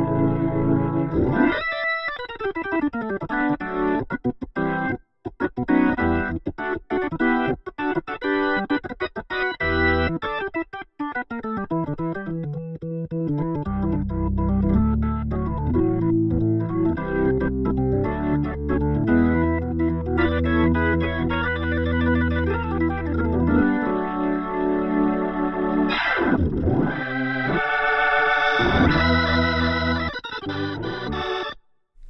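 Hammond-style organ from a Nord Electro 5D played through an Electro-Harmonix Lester K rotary-speaker simulator pedal. It plays chords, with two quick downward runs in the first half, then long held chords.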